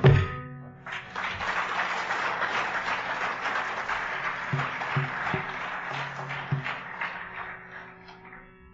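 A last mridangam stroke ends the music, then after about a second an audience applauds for several seconds, slowly fading, over a faint steady drone with a few low thuds.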